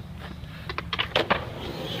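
A low steady rumble with a few sharp clicks and knocks about a second in.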